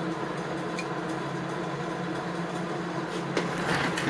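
Steady low background hum, with a few faint clicks near the end as a steel connecting rod and its bearing cap are handled.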